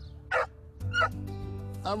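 A beagle gives two short barks, about half a second apart, over soft background music from the ad's soundtrack.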